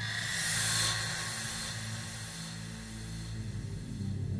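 Quiet intro of a hardstyle track: a white-noise swoosh effect sets in suddenly, is loudest about a second in and then fades away, over a low sustained synth pad.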